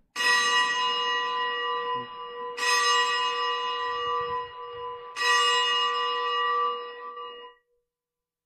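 Consecration bell struck three times, a couple of seconds apart, each stroke ringing on and fading, marking the elevation of the chalice after the words of consecration.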